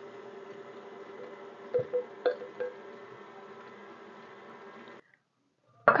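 KitchenAid Artisan stand mixer running on its lowest speed, a faint steady hum, with a few light clicks about two seconds in. It cuts off abruptly near the end.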